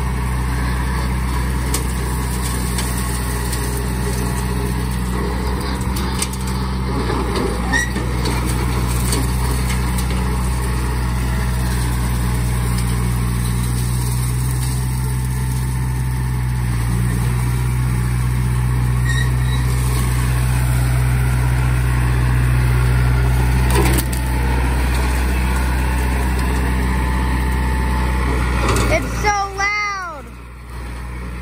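John Deere compact utility tractor's diesel engine running steadily at working speed as it drives with its front loader, getting somewhat louder through the middle.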